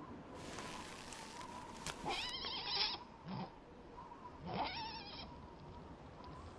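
A horse whinnying twice, a wavering call about two seconds in and another near five seconds, with a short low snort between them. Faint rustling runs under the first couple of seconds.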